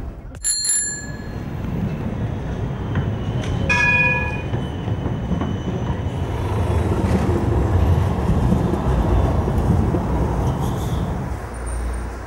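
A bicycle bell rings twice, about a second in and again about four seconds in, over a steady rumble of city street traffic.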